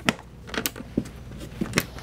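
A few sharp metallic clicks and light knocks from a steel pistol lockbox as its lid is pressed shut and its latch is worked.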